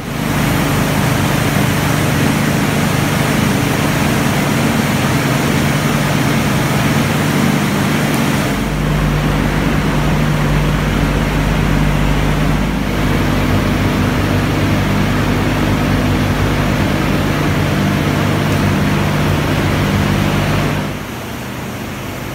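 Industrial air blower running steadily, a loud rush of air with a low hum, forcing air through a duct into the bottom of a sintering bed. The hum shifts slightly about 8 and 13 seconds in, and the sound drops away shortly before the end.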